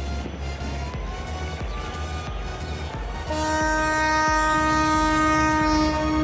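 Background music with a steady pulsing beat. About three seconds in, a loud, steady horn-like chord comes in and holds.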